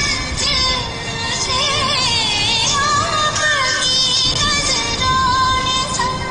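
A song: a high singing voice, with wavering vibrato and gliding notes, over instrumental accompaniment.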